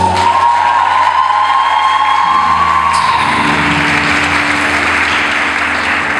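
Audience applause over the performance music, with a long high note held through about the first three seconds.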